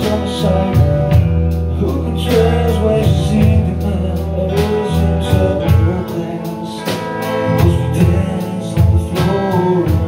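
Live band music: drums keep a steady beat under bass and guitar, with a singing voice over the top.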